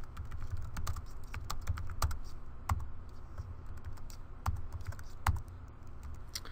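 Typing on a computer keyboard: an irregular run of key clicks as a line of code is entered, a few harder strokes standing out.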